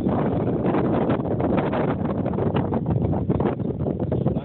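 Wind buffeting the microphone: a steady low noise with rapid, irregular flutter.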